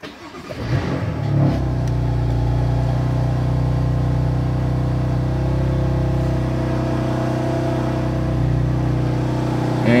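BMW M2's turbocharged straight-six engine starting from the push button, heard from inside the cabin: it catches and flares up about a second in, then settles into a steady idle.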